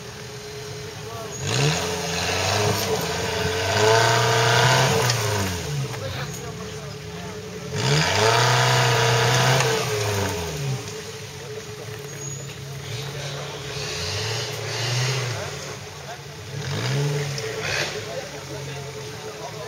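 Engine of a caged Suzuki trial 4x4 revving hard in bursts that rise and fall, as the vehicle claws over a steep dirt bank with its front wheels spinning and throwing dirt. There are two long revs, about two and eight seconds in, then shorter ones near the end.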